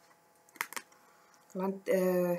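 A few quick, sharp clicks, about half a second in, from tarot cards being picked up and handled with long fingernails.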